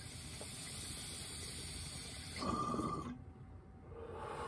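A long inhale through a glass water bong fitted with a disposable vape pen: a steady airy hiss for about two and a half seconds, then a brief louder rush that stops about three seconds in.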